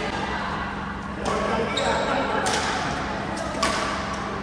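Badminton rally: rackets striking the shuttlecock three times, about a second apart, the last hit the loudest, with shoes moving on the wooden court floor. The hits echo in a large sports hall over a murmur of voices.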